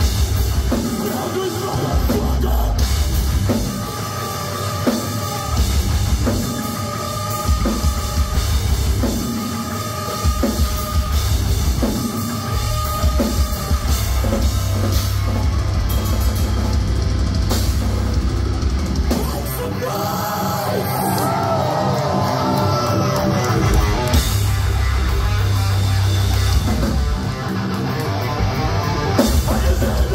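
Live metalcore band playing loud through a club PA, with distorted guitars, bass and drum kit. The heavy low end drops out briefly a few times, the longest break about two thirds of the way through.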